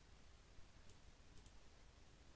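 Near silence with two faint computer mouse clicks, about a second and a second and a half in.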